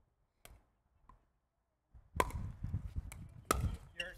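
Pickleball paddles striking a hard plastic pickleball during a rally: a faint tap about half a second in, then from about halfway a quick run of sharp pops, the loudest about halfway and again near the end.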